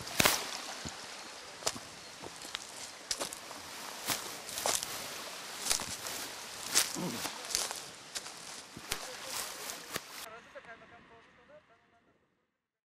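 Footsteps of several people walking on a stony gravel path: crunching steps at an uneven pace. The sound drops off sharply about ten seconds in and fades out.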